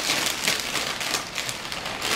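Dense, continuous crinkling and crackling, many small sharp clicks close together, as from something thin and crisp being handled or crushed.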